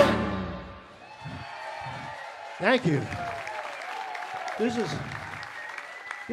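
A live band's final chord of a rock song cuts off and rings away in the hall, then the audience applauds, with a few voices heard over the clapping.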